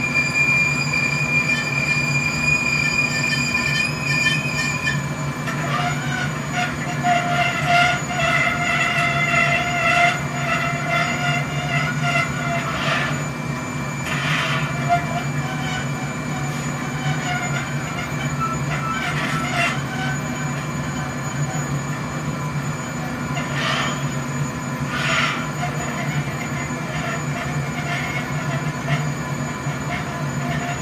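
Steady roar of a gas-fired glassblowing furnace with its blower, carrying a high whine whose pitch changes about five seconds in. A few short clicks are heard in the middle and later on.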